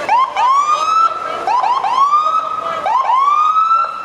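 A siren sounding loudly in repeated cycles: a few quick rising chirps, then a longer tone that rises and holds, three times over.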